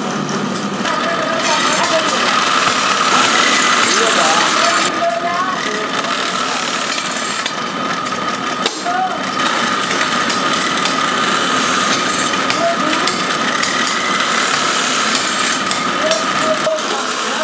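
Belt-driven bench drill press running with a steady motor whine while its bit drills holes through the rim of an aluminium pan.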